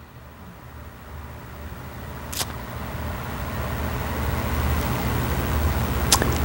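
A low rumble that grows steadily louder, with a single sharp click about two and a half seconds in.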